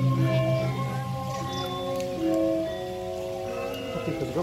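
Balinese gamelan playing: metallophones ringing sustained notes over a deep gong tone with a steady wavering beat.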